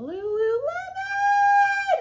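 A woman's voice drawing out one long, excited sung note. It rises in pitch over the first second, then holds high until it stops just before the end.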